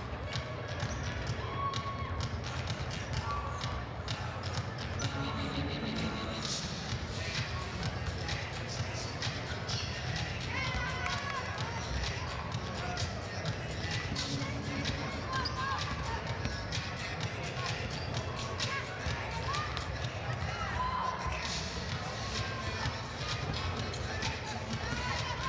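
Basketball bouncing on a hardwood gym floor in repeated thuds, with short squeaks of sneakers on the court. Crowd voices run underneath.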